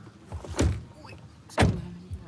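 Two dull knocks about a second apart, the second louder.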